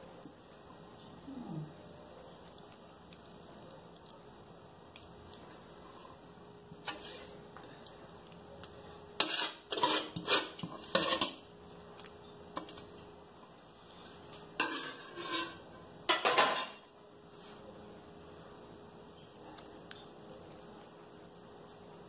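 Metal ladle clinking and scraping against a glass baking dish and a pot as meat sauce is spooned out and spread, in a few short bursts of clicks, mostly in the second half.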